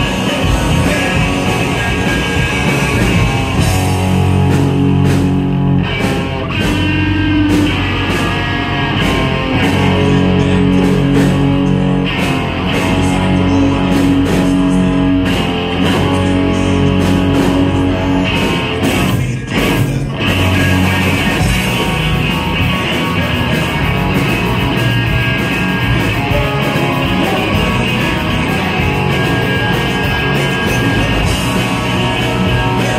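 Ska punk band playing live: electric guitars, bass and drums, with a singer, loud and full throughout.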